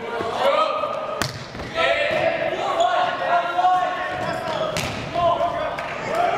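A volleyball being struck in a gym, with two sharp smacks about a second in and near the end, over voices of players and spectators calling out.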